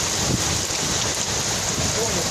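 Heavy storm rain with strong wind: a steady, dense hiss with an irregular low rumble of gusts underneath.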